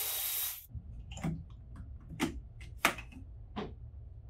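A steady hiss that cuts off abruptly about half a second in. It is followed by a run of scattered light clicks and knocks, about six in under three seconds, as parts and tools are handled on a dirt bike being taken apart.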